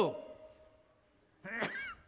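A man's speaking voice trails off in a falling glide. About a second and a half in comes a short, squeaky nasal sound with a click as he blows or snuffles his nose into a handkerchief.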